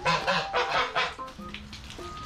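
White domestic geese honking: a quick run of loud honks in the first second or so, then quieter.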